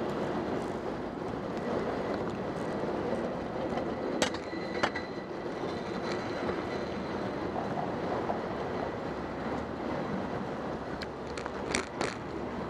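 Steady city street noise of traffic rumble, heard from a bicycle. Two sharp clinks with a brief ringing tone come about four seconds in, and a few more clicks come near the end.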